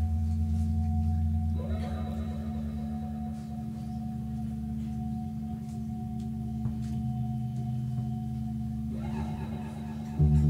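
Electronic keyboard holding a sustained, steady chord with a thin high tone above it, new notes swelling in about two seconds in and again near the end: the drone that opens a song.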